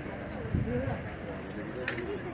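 Metal bit and bridle fittings on a cavalry horse's tack jingling as the horse tosses its head, with a sharp clink near the end, over background voices.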